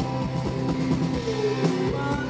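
A live rock band playing an instrumental passage: a drum kit hits a steady beat about twice a second under sustained electric guitar chords. Near the end one note bends in pitch.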